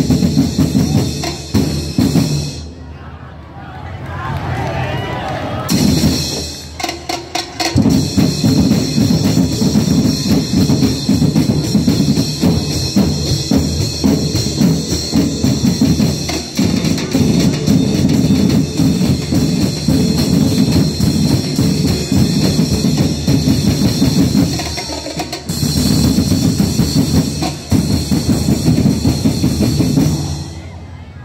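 Percussion band of drums playing a fast, driving beat. About two seconds in the drumming breaks off for several seconds, then resumes, with another brief break near the end.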